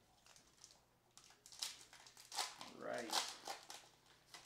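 Foil wrapper of a Bowman baseball card pack being torn open and crinkled by hand, in a run of sharp crackles starting about a second in. A brief voice-like sound comes in near three seconds.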